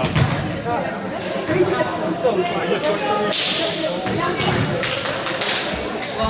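Volleyball being struck during a rally: several sharp smacks of hands on the ball, over players' calls and chatter in the hall.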